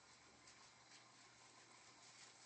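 Near silence: room tone with a few faint scratchy strokes of a nail brush being scrubbed over fingernails.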